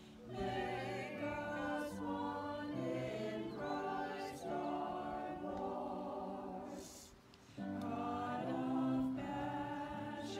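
A small vocal group, a man and three women, singing a hymn together through microphones, with a short break between phrases about seven seconds in.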